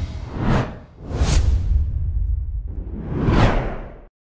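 Whoosh sound effects of an animated logo intro: three swishes, each swelling and fading, over a deep rumble, cutting off suddenly at the end.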